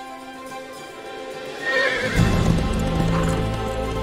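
Film score music that swells about halfway through, with a horse neighing and galloping hoofbeats.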